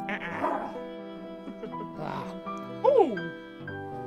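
Dog-like growling and yapping over background music, ending in a loud yelp that falls sharply in pitch about three seconds in.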